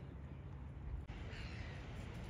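A few bird calls about a second and a half in, over a steady low rumble of outdoor background noise.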